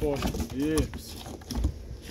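Hooves of a ram clicking and knocking on a truck's rubber-matted loading ramp as it is led down on a rope, with a low thump about one and a half seconds in.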